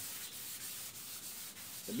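Steady hiss of background noise, even and without distinct events.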